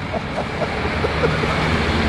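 Roadside noise with a steady low engine hum that comes in about a second in.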